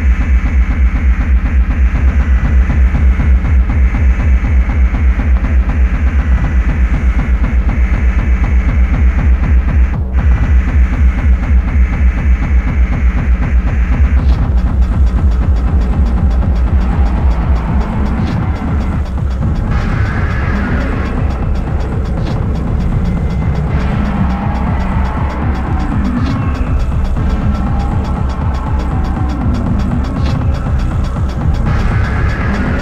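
Hardcore techno (doomcore) from a DJ mix: a fast, heavy kick drum beats steadily under a dark synth layer. Partway through, the highs open up, and later the steady kick gives way to a busier layer in the middle range.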